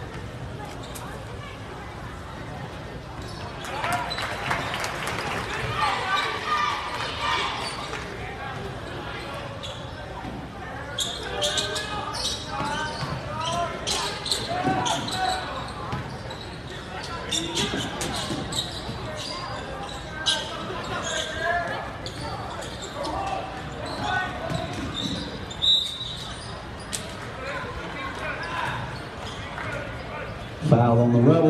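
Gym sounds of a basketball game in play: crowd voices in the bleachers with a basketball bouncing on the hardwood floor. From about eleven seconds in come many short, sharp bounces and shoe squeaks as the players run the court.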